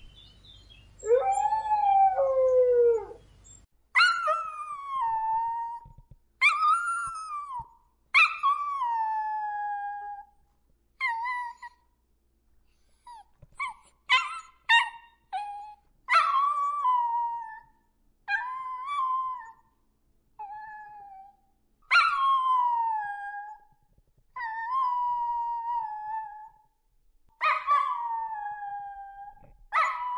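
A dog howling: one lower howl in the first few seconds, then a long run of high-pitched howls that each fall in pitch, about one every two seconds, with a few short yips in the middle.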